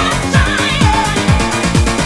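Techno played from vinyl turntables through a DJ mixer: a steady kick-drum beat with a warbling synth line above it.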